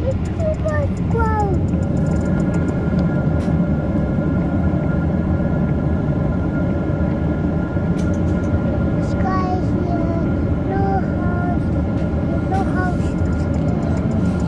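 Steady airliner cabin noise in flight: a low roar of the jet engines and airflow with a faint steady hum. A small child's voice makes short, high calls that rise and fall, about a second in and again several times later.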